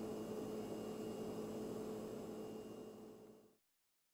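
Faint room tone: a steady low hum with hiss, fading out and dropping to dead silence about three and a half seconds in.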